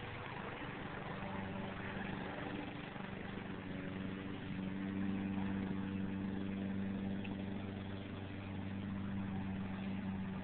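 A steady engine-like hum with a low, even pitch, a little louder around the middle, over outdoor background noise.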